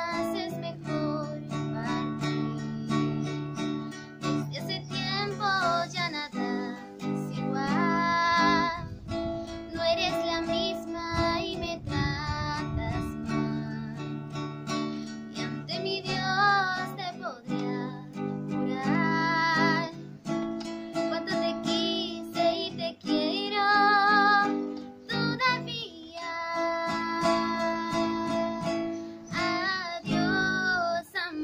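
A woman singing a ballad and accompanying herself on a strummed acoustic guitar, her held notes wavering with vibrato and the guitar chords ringing steadily between sung phrases.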